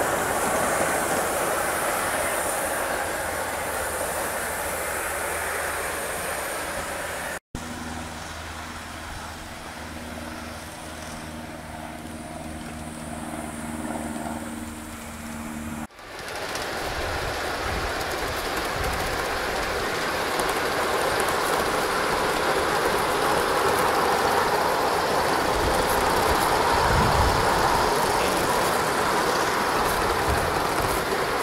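Aster Union Pacific FEF 4-8-4 live-steam model locomotive running on an elevated garden railway: a steady rush of steam and rolling wheels on the rails, a little louder near the end as it passes close. The sound breaks off abruptly twice, and between the breaks a steady low hum with several pitched tones takes over.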